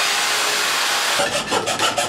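An electric drill boring into a wooden board gives a steady grinding noise. About a second in, it changes to quick back-and-forth rasping strokes, several a second, as a hand tool is worked through the hole to enlarge it.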